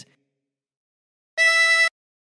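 A single blow note on hole 8 of a ten-hole diatonic harmonica, the E that opens the tune. It comes about one and a half seconds in, holds one steady pitch for about half a second, then stops.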